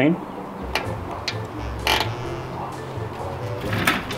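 A few sharp knocks and clicks as a plastic dual electric fan shroud is set and seated onto an aluminium radiator, over low background music.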